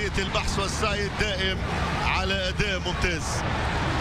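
A football TV commentator talking over the match, with a steady low background noise underneath.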